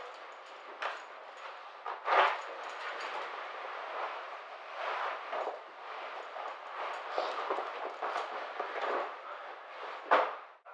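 Rustling and scraping of clothing as a pair of denim jeans is unfastened, pulled off and tossed aside, with a few sharp clicks and knocks among the rustle.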